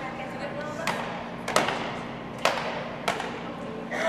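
Players high-fiving: about five sharp hand slaps spread through the few seconds, the loudest about one and a half seconds in, over a background of voices.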